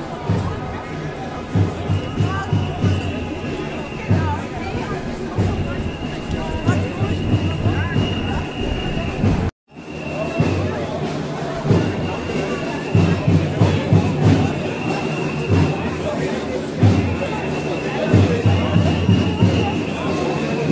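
Crowd of marchers at a street protest, with groups of low drum-like thumps and a high held tone that sounds again and again for a second or two at a time. The sound cuts out for a moment a little before the middle.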